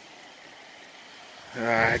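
Steady, faint hiss of falling rain, heard through a phone microphone. A man's voice starts near the end.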